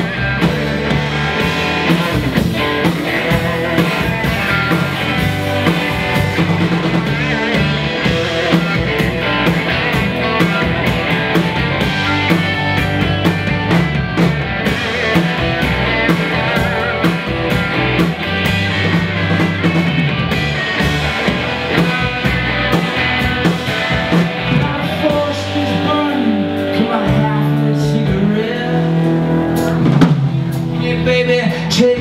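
Live rock band playing amplified electric guitars, bass guitar and drum kit. The cymbals and drums ease off a little near the end while the guitars carry on.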